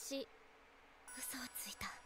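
Soft, breathy, whispered speech from an anime character voice, with a near-silent pause in the first second.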